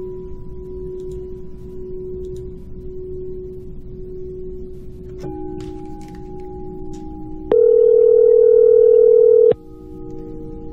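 Telephone line tones as a call is put through: a steady tone, with further tones joining about five seconds in. A much louder ringing tone sounds for about two seconds near the end.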